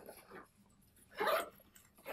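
A dog gives one short whine, a little over a second in.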